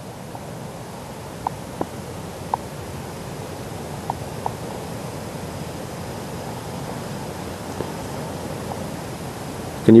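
Steady low hiss of outdoor background noise, with a few faint clicks in the first half; a man's voice starts at the very end.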